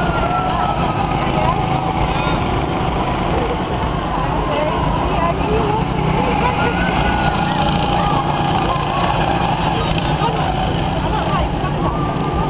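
Go-kart engines running as karts drive around the track, with indistinct voices in the background.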